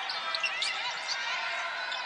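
Live game sound from a basketball arena: sneakers squeaking on the hardwood court and a basketball bouncing, over a steady murmur from the crowd.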